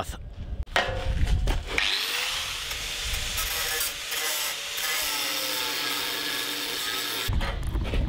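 Electric angle grinder spinning up with a rising whine about two seconds in, then running steadily as it cuts a bevel groove into the steel plate of a welded joint, and stopping abruptly near the end. A few knocks of steel being handled come before it starts.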